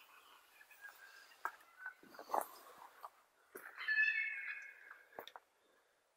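An animal's drawn-out, wavering call, the loudest thing here, about midway and lasting over a second, with a fainter similar call earlier and a few sharp clicks and rustles in between.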